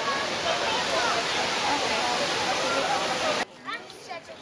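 Waterfall cascades rushing steadily under the voices of a large crowd of bathers. About three and a half seconds in it cuts off abruptly to a much quieter outdoor scene with a few voices.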